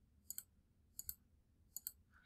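Three quiet computer mouse clicks about a second apart, each a quick press-and-release double tick, as numbers are entered on an on-screen calculator.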